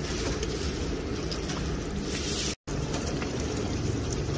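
A metal ladle stirring a thick liquid in a large pot, giving steady sloshing over a low rumble, with a brief hiss just past two seconds. The sound cuts out for a split second about two and a half seconds in.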